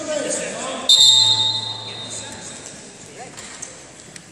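A referee's whistle blast about a second in, a shrill steady tone that stops the wrestling action, fading out over about a second.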